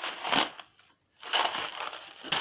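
Cardboard box of dry penne pasta handled and rattling, in two rough bursts: a short one at the start and a longer one from just past the middle.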